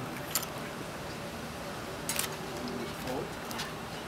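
Faint, low voices of onlookers under a steady outdoor hush, with three brief clicks, the loudest about two seconds in.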